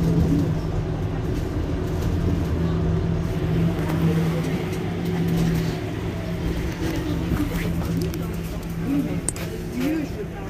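Mercedes-Benz Citaro C2 hybrid city bus standing at a stop with its engine idling: a steady low hum.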